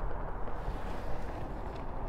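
Steady low rumble of outdoor background noise, with no sharp events.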